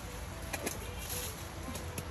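Leaves and branches rustling as a long stick is worked among the branches of a fruit tree, with one sharp snap a little past half a second in.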